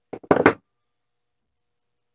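A few quick knocks and clatters in the first half-second: a hammer set down on a wooden workbench.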